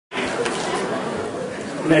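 Audience chatter in a large hall: many people talking at once at a steady level, with no single voice standing out.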